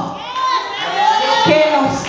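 A woman preaching in loud, shouted bursts through a microphone, with other voices from the congregation calling out over her.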